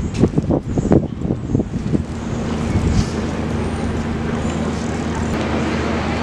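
Steady city-centre traffic noise: a constant low hum under a wash of street sound, with some wind on the microphone. A few short irregular sounds come in the first two seconds.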